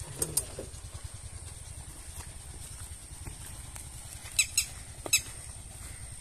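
A bird gives three short, sharp squawks with falling pitch about four and a half to five seconds in, over a steady thin high whine and a low rumble.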